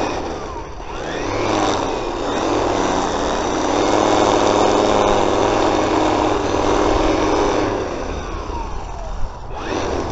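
String trimmer running steadily, cutting grass along the edge of a concrete path. Its speed dips briefly near the end and picks up again.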